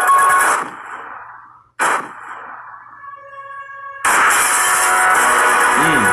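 Horror film trailer soundtrack: loud music drops away about half a second in, a single sudden hit comes near the two-second mark, a few quiet held tones follow, and the loud music comes back suddenly about four seconds in.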